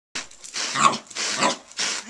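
Carpet rake dragged through carpet pile in three quick scratchy strokes, with a small dog growling as it goes after the rake head.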